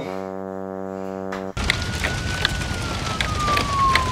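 Edited-in comic sound effects: a low, steady, horn-like buzz held for about a second and a half that cuts off suddenly, then a thin whistle sliding slowly downward over a steady hiss.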